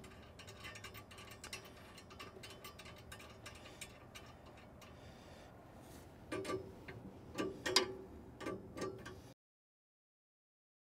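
Rapid faint ticking of a wrench working the top lock nut on the cracker plate's adjusting bolt, locking the plate in place, followed by a few louder clusters of metal clinks of the wrench and nut against the steel frame. The sound cuts off abruptly near the end.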